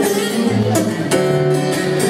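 Acoustic guitar strummed in a steady rhythm, accompanying a song in a short gap between sung lines.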